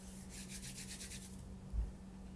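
Faint rubbing of hands close to a phone's microphone: a short run of soft scratchy strokes, then one brief low bump near the end.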